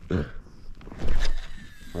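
A baitcasting rod being cast from a kayak: a short rush of air from the rod swing about a second in, then a faint, slightly falling whine as the reel spool pays out line.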